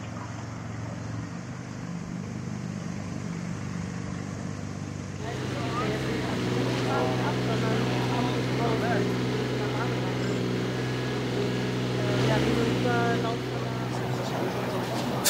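An engine running steadily, a low hum that gets louder and fuller about five seconds in, with faint voices or chirps above it.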